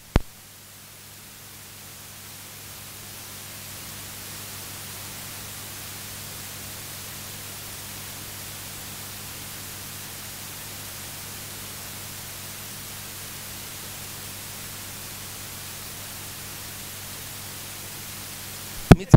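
Steady hiss with a low electrical hum, the noise floor of the microphone and sound system with no one speaking into it; the hiss swells a little over the first few seconds, then holds level.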